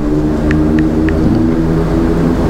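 A steady machine hum, with three short, light ticks about a third of a second apart in the first half.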